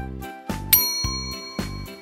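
Background music with a steady beat of about two per second. A single bright, bell-like ding comes in about two-thirds of a second in and rings on for more than a second.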